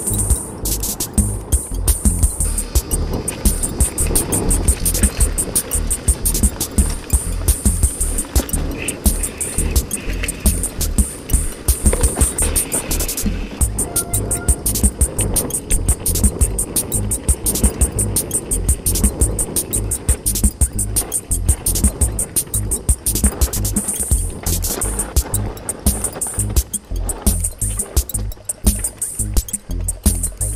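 Music plays over the dense, irregular clatter and knocking of a mountain bike rolling fast down a dirt and rock trail, with low rumble from the ride.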